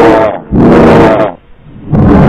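Heavily edited, very loud logo sound effects: two pitched bursts under a second each, roar-like and distorted, with short drops between them, and a third starting just before the end.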